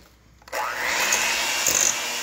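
Electric hand mixer switched on about half a second in, its motor rising in pitch up to speed and then running steadily as the beaters cream butter and sugar in a stainless steel bowl.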